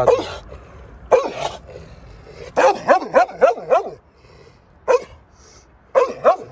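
A large dog barking in warning: one bark about a second in, a quick run of five or six barks around the three-second mark, then one more near the end.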